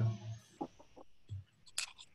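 Faint clicks, a soft low knock about halfway through and a sharper click near the end, from a computer being worked as screen sharing starts.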